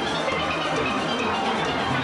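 A steelband playing steel pans as continuous music.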